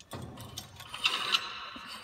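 Volleyball net cable being threaded through a metal pulley on the net post: a rubbing scrape of the cable with metallic clicks, two sharp ones about a second in.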